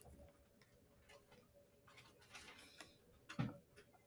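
Near silence with faint scattered ticks and clicks, and one soft thump about three and a half seconds in as the notebook on the desk is shifted.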